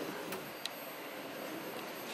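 Steady background noise of an exhibition hall, with two faint clicks in the first second as the van's pull-out fridge section is handled.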